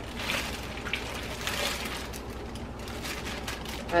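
Thin plastic food bag crinkling and rustling as hands gather and twist its top closed.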